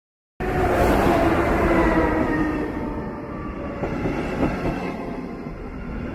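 A double-deck electric passenger train running past close by, starting abruptly about half a second in: a whine of several tones that drift down in pitch, then wheels clicking over the rail joints in the second half.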